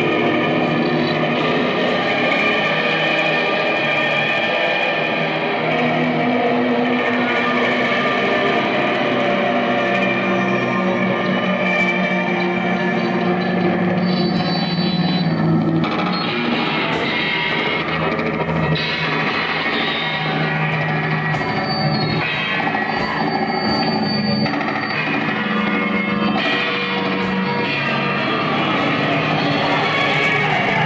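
A live band playing loud, dense noise music: distorted electric guitar through effects pedals, steady in level with no pauses.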